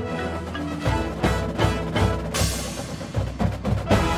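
Drum and bugle corps brass and percussion playing: a held chord, then from about a second in a series of sharp accented hits, with a cymbal crash midway.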